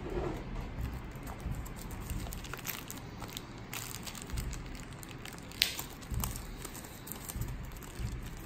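Clear plastic toy packaging being handled: blister trays and a bagged instruction sheet crinkling, with scattered light clicks and taps. One sharp click about five and a half seconds in is the loudest.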